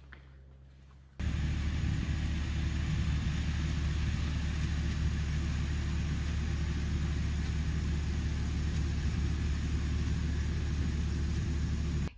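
Farm tractor engine running steadily, with a strong low rumble. It comes in suddenly about a second in, after a quiet start.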